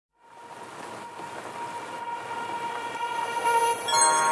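Opening swell of an electronic house track: a wash of noise with held synth chord tones, growing steadily louder from silence.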